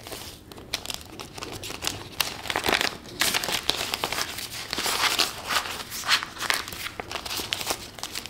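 Clear plastic binder envelope and a stack of Canadian polymer banknotes crinkling and rustling as the bills are slid into the envelope, in uneven spurts with small sharp clicks.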